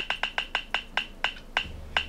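A web roulette wheel's ticking sound effect from a laptop speaker as the wheel spins down: about ten sharp, pitched clicks that space out steadily, from several a second to about two a second.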